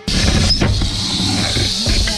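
Western diamondback rattlesnake rattling its tail: a steady high-pitched buzz that starts abruptly, with background music underneath.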